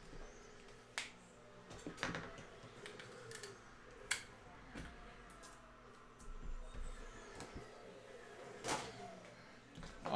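Scattered sharp clicks and taps, four loud ones spread over several seconds, with faint rustling between: objects being handled on a desk.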